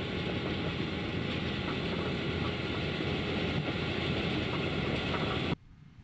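Kleine self-propelled sugar beet harvester running as it lifts beets: a steady, dense mechanical noise of engine and machinery that cuts off suddenly about five and a half seconds in.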